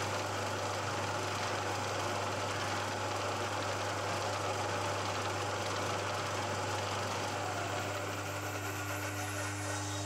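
Milling machine spindle running with a 12 mm carbide end mill plunging into the workpiece to cut a flat: a steady motor hum with cutting noise. About three-quarters of the way through it eases a little, as the cutter is drawn back out of the cut.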